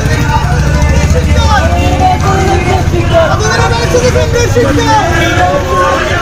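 Marchers shouting protest slogans, several voices together, over the steady low pulsing hum of a motor vehicle engine running close by.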